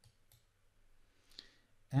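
A few faint clicks, most likely a computer mouse clicking as a context menu is opened, in a near-quiet pause; a man's voice starts just before the end.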